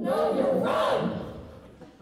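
A sudden loud shout from several voices at once, lasting about a second and then fading away in the hall's echo.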